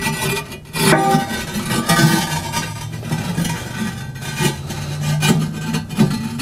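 Ceramic fire ring scraping and grinding against the ceramic firebox as it is lowered and settled into a kamado grill, over soft acoustic guitar music.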